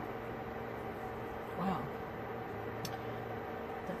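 Steady mechanical hum of a running fan or appliance, holding a few even tones, with one faint click near the end.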